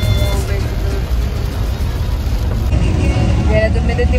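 Steady low road and engine rumble inside a moving Nissan car's cabin in heavy rain, with a constant hiss of rain and tyre spray. A voice starts speaking near the end.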